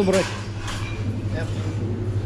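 Canteen room noise: a steady low hum with faint background voices, after a man's voice says one word at the very start.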